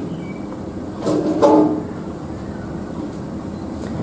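Steady low background hum throughout, with a short murmur from a man's voice about a second in.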